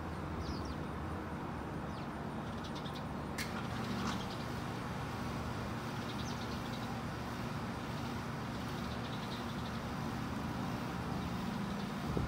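Steady low hum of outdoor urban background noise, with a few faint, scattered chirps from house sparrows in a bush.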